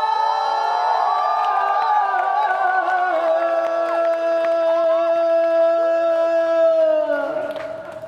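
Voices singing together at the close of a song, many pitches sliding and overlapping at first, then settling into one long held note that fades out shortly before the end.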